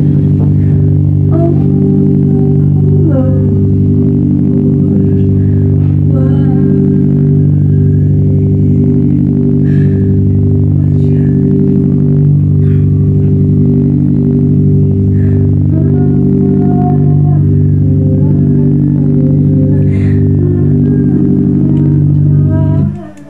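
A loud, steady low musical drone made of several held tones sounding together, unchanging in level, with faint vocal sounds over it.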